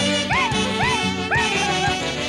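Peruvian Andean carnaval band music in an instrumental stretch: a high lead line repeats a short rising-and-falling phrase about twice a second over a steady bass and beat.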